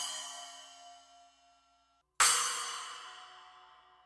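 An 8-inch Wuhan splash cymbal rings and fades out. About two seconds in, an 8-inch Saluda Prototype splash cymbal is struck once and rings, fading over about two seconds.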